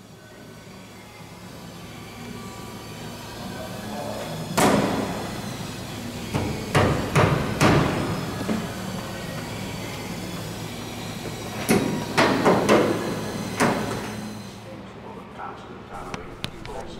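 Irregular knocks and hammer blows in an aircraft restoration workshop, singly and in small groups of two or three, over a steady background of workshop noise and faint distant voices.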